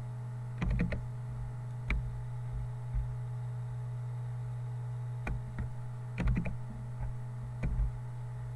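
Computer keyboard keys and clicks tapped in short scattered groups, as copy-and-paste shortcuts are used, over a steady low electrical hum.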